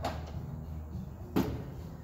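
A folding camp table being seated into its mount on a slide-out cooler tray: a faint knock at the start, then one sharp clack about one and a half seconds in as it drops into place.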